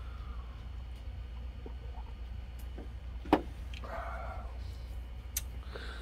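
Quiet room tone with a steady low hum, a single sharp click a little over three seconds in, and a faint brief rustle about a second later.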